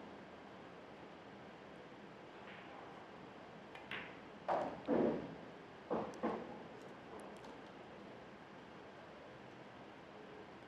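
Quiet room tone in a venue, broken by about five short knocks or thuds in quick succession between about four and six and a half seconds in.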